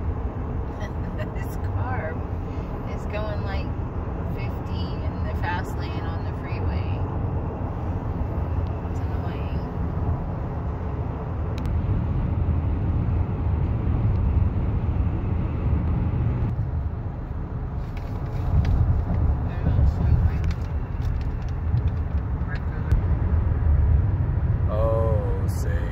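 Steady low road rumble heard inside a moving car's cabin at highway speed, growing louder in the second half.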